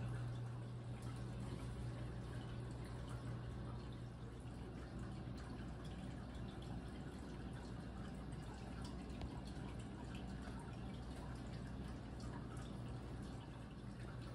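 Quiet room tone: a steady low hum, strongest for the first few seconds, with faint scattered ticks.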